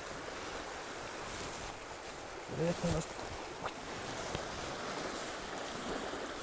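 Steady rush of river water flowing over rapids. A brief voice sound about two and a half seconds in, and a couple of faint ticks a little later.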